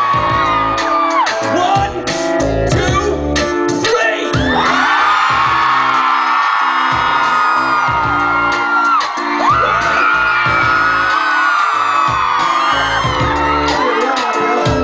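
Loud live band music, with fans whooping and screaming over it.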